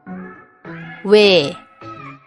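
Speech over music: a voice pronouncing the Korean vowel ㅚ ('oe', said like 'we') once, with a falling pitch, about a second in, over light background music.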